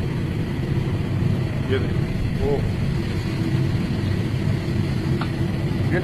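Steady low rumble of a large commercial gas burner firing under a wide pan of frying ghee.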